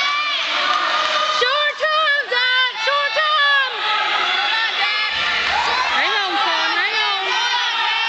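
Spectators at a high school wrestling match yelling and cheering, many high voices shouting over one another without a break, as one wrestler holds the other on his back.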